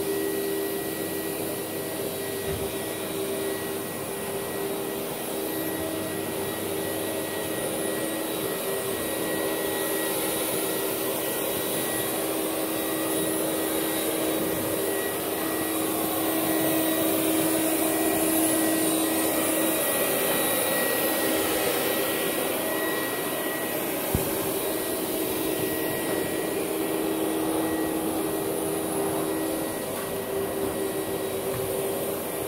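Vacuum cleaners running steadily on carpet: a red tub vacuum, a backpack vacuum and a canister vacuum with a long hose, their motors making a constant whine over the rush of suction. There is one brief knock about four-fifths of the way through.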